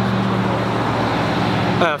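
Road traffic: a motor vehicle engine running close by, a steady low hum over the noise of the road.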